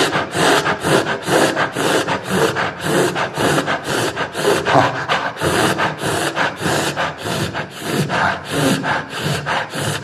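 A man panting rhythmically into a handheld microphone, about three or four breaths a second, imitating a panting dog.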